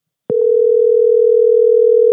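Telephone ringback tone on an outgoing call: one steady two-second ring that starts a moment in and stops with a click.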